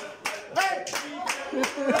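A group of people clapping their hands in a steady rhythm, about four claps a second, with voices chanting along.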